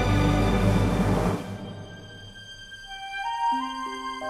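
Orchestral film-score music: a loud, full orchestral passage with a deep low rumble breaks off about a third of the way in. A few quiet, sustained single notes then enter one after another near the end.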